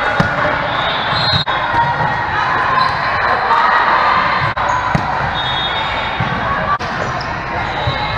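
Volleyball play in a large gym hall: the ball being struck with hands a few times as sharp smacks, and sneakers squeaking briefly on the sport-court floor, over a steady chatter of players and spectators from several courts.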